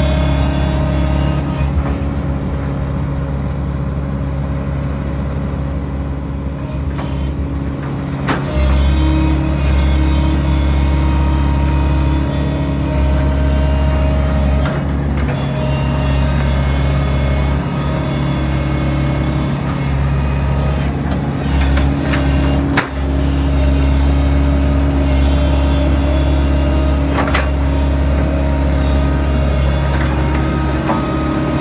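Case tracked excavator's diesel engine running steadily and loudly, with a steady whine over it; the engine note rises about eight seconds in. A few sharp clanks sound from the machine, the clearest about two-thirds of the way through.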